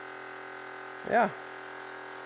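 Electric pump of a small reverse-osmosis sap concentrator running with a steady hum while the membranes are flushed with permeate water.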